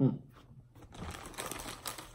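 A short, falling hum through a mouth stuffed with marshmallows, then the crinkling of a plastic marshmallow bag as a hand rummages in it, many small crackles over about a second and a half.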